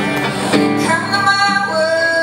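Live solo song performance: a woman singing long, held notes over her own electric guitar.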